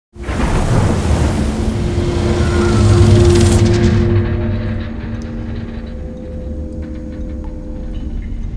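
Ominous film-trailer soundtrack: a loud rush with a deep rumble opens suddenly and fades away over the first four seconds, over low droning tones that hold steady throughout, with a few faint ticks and creaks in the second half.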